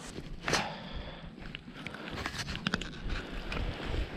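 Small clicks and rustles of a hooked bass being handled and a tail-spinner lure worked free with pliers, over light wind noise on the microphone. One sharper click comes about half a second in, and a quick run of clicks near three seconds.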